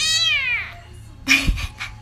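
A tabby kitten gives one loud, high-pitched meow that falls in pitch and lasts over half a second. About a second and a half in comes a brief bump.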